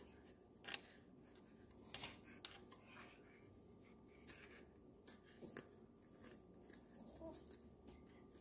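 Near silence, with faint scattered rustles and light clicks of acrylic yarn being wound by hand around a cardboard heart.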